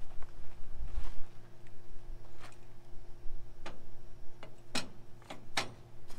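Scattered sharp clicks and knocks, about seven, the two loudest near the end, as a Haul-Master 3500 lb electric A-frame trailer jack is handled and set down through its mounting hole in the trailer tongue.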